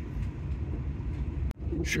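Steady low rumble of an SNCF Intercités train running at about 155 km/h, heard from inside the passenger carriage. The sound drops out for an instant about one and a half seconds in.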